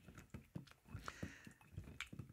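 Faint soft knocks and squishing of a steel muddler pressing and twisting lime pieces in a rocks glass, crushing out the juice and zest.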